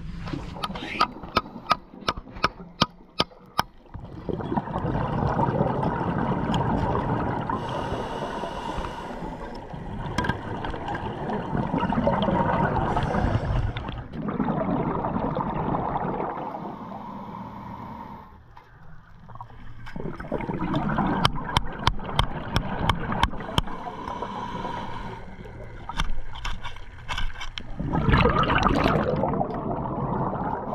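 Scuba regulator breathing underwater: long rushing bursts of exhaled bubbles every few seconds, with quieter inhale gaps between them. A run of sharp clicks sounds in the first few seconds.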